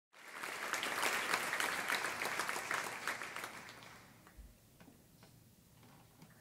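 Audience applauding, dying away after about four seconds into a few last scattered claps.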